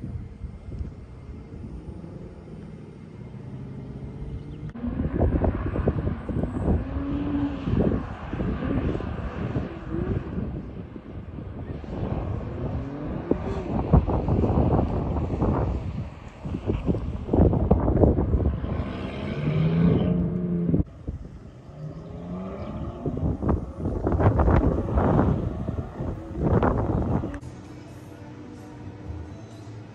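Aston Martin sports cars driving on a race circuit, engines revving up and dropping back through gear changes as they pass by, several passes in a row after a quieter start.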